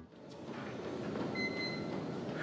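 Steady machine and room noise in a gym, with a faint short electronic beep about one and a half seconds in.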